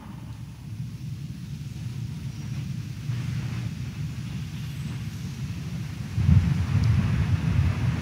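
Low rumble and shuffling of a church congregation kneeling down, louder about six seconds in.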